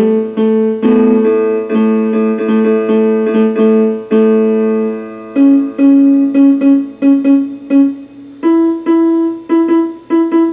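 Electronic keyboard in a piano voice playing held chords that are struck again and again, then from about five seconds in a run of short repeated notes, stepping up to a higher note near the end.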